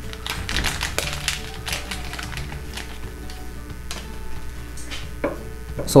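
Hands patting and pressing dry breading flour onto chicken pieces in a stainless steel bowl: a run of irregular soft pats and light taps, over background music.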